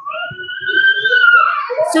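A young child's long, high-pitched squeal from the background, held for nearly two seconds, rising slowly in pitch and then falling away.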